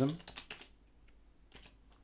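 A few scattered keystrokes on a computer keyboard, typing a sudo password and pressing Enter.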